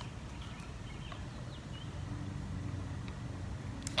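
Outdoor residential ambience: a steady low rumble of distant traffic, with a faint engine hum coming in about halfway through and a few faint bird chirps.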